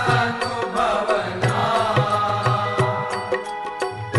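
Devotional aarti music: a voice chanting over held melodic accompaniment and a steady drum beat.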